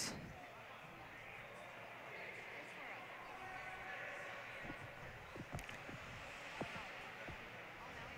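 Faint ice-rink ambience during a stoppage in play: low murmur of voices in the arena, with a handful of light knocks in the second half.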